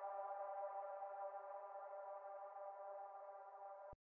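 Faint sustained synthesizer chord, the tail of a Memphis phonk beat with no bass or drums, held steady and slowly fading, then cutting off just before the end.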